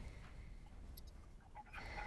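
Quiet room tone: a low, steady hum with a few faint clicks.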